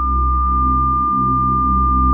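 A steady, unbroken high electronic tone held over a low, pulsing drone.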